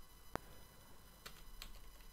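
One sharp click at the computer about a third of a second in, then two faint clicks, over low background hiss.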